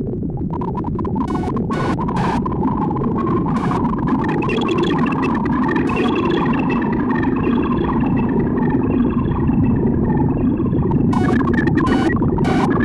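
Make Noise modular synthesizer playing a dense, noisy drone, with faint held high tones coming in after a few seconds and a handful of sharp clicks near the start and near the end.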